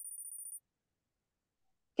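Faint, high-pitched electronic tone from the Kahoot quiz game as its scoreboard comes up. It ends about half a second in and is followed by near silence.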